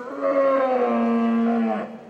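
A Holstein cow mooing once: a single long call lasting nearly two seconds that stops near the end.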